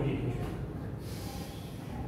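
Chalk writing on a blackboard: faint scratching strokes, clearest about a second in, over a steady low hum of room fans. A short, low breathy sound at the very start is the loudest moment.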